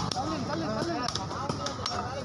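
A heavy curved fish knife chopping through cobia meat and bone on a wooden block, with several sharp strikes. People are talking throughout.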